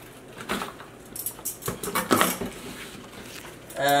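A few short rustles and scuffs in a cardboard box holding live feeder rats as it is opened and reached into.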